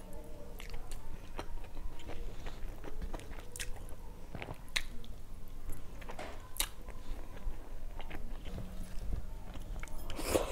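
Close-miked chewing of a mouthful of rice mixed with saag eaten by hand, with irregular sharp clicks.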